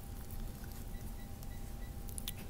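Steady low room hum with a faint, even tone over it. About a second in comes a quick run of faint, short, high beeps.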